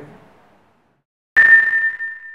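A single bright ding: a bell-like chime sound effect for the channel's logo. It is struck sharply about a second and a half in and rings on as one clear tone, fading slowly.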